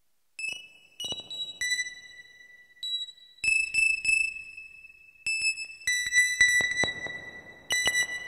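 Eurorack modular synthesizer playing sparse, high bell-like notes that start out of silence about half a second in, each struck sharply and ringing on so that the tones overlap, at an uneven pace of about ten notes.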